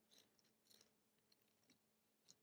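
Near silence, with a few faint snips of scissors cutting paper.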